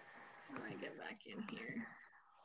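Quiet, muttered speech close to a whisper, lasting about a second and a half.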